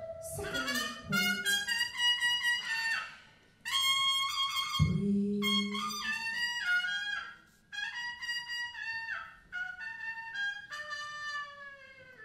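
Big band brass section, trumpets and trombones, playing short free-improvised phrases with bending notes, broken by two brief pauses, with a low sustained note entering about five seconds in.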